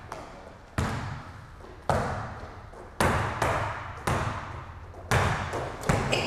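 A basketball dribbled hard on an indoor court: about seven sharp bounces, roughly one a second at first and coming quicker near the end, each ringing on in the echoing gym.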